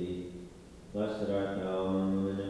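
Voices reciting a prayer aloud on a near-monotone, chant-like pitch; they break off for a short breath pause about half a second in and take up the prayer again about a second in.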